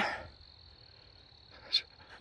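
Crickets singing faintly in woodland: a thin, steady, high-pitched trill that runs on unbroken under a quiet lull.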